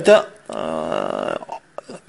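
A man's voice: a short word, then a drawn-out hesitation sound held at one pitch for about a second, and a brief click near the end.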